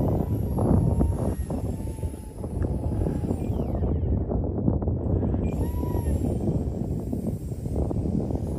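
Wind rumbling on the microphone, loud and uneven. Behind it is the faint high whine of a small electric RC model plane's motors, shifting in pitch as it flies overhead.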